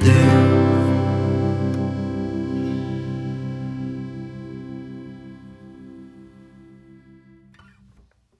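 The final strummed chord of a country-folk song ringing out on acoustic guitar and fading away slowly over about seven seconds until it dies out.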